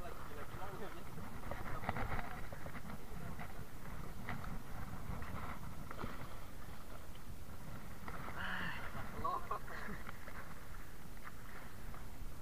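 Indistinct voices of people on a small fishing boat over steady wind and sea noise, with a few short clicks and knocks.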